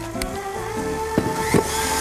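Electric stand mixer running steadily at low speed, beating a butter mixture, under background music.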